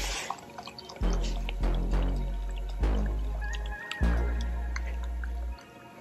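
Background music with deep bass notes that start sharply and die away, about five in all, over the faint trickle of liquid hardener pouring into a plastic measuring cup.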